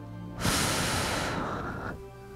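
A loud breath blown out close to a headset microphone, starting about half a second in and lasting about a second and a half, over steady background music.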